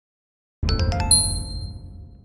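Short chime jingle of an animated channel logo: silent for about half a second, then a low bass hit under four quick, bright struck notes that ring on and fade away.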